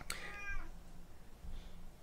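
A domestic cat meowing once, a high call of about half a second just after the start; the cat is asking for food.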